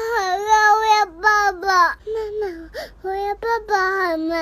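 A cat meowing in a run of long, drawn-out cries, several in a row, some sliding down in pitch.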